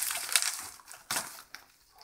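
Packing material crinkling and rustling as a shipping package is unpacked by hand, in a few short bursts that die away in the second half.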